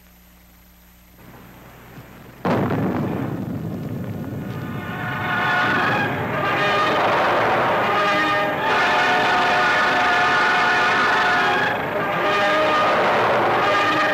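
Low soundtrack hum, then about two and a half seconds in a sudden loud boom that dies away over a couple of seconds: the sound of a nuclear test detonation. Music with sustained chords then swells in and carries on.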